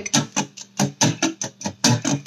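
Electric guitar strummed in short, choppy chords, about four or five strokes a second.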